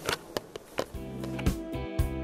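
Background music with held tones and a beat starts about a second in, after a few sharp clicks.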